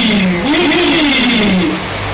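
A woman's voice crying out in two long moans, each rising and then falling in pitch, over a faint steady hum.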